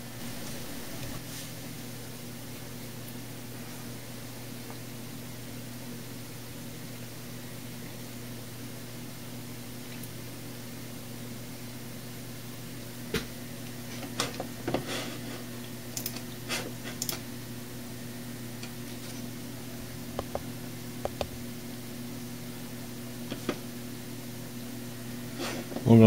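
Steady hum of a Dell OptiPlex 390 desktop computer running as it boots, its fans and spinning hard drive holding one even tone. A scattered handful of short clicks comes in the second half.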